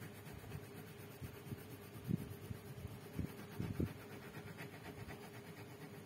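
A colored pencil scratching back and forth on paper as an area is shaded in, with a few louder soft knocks of the strokes about two to four seconds in.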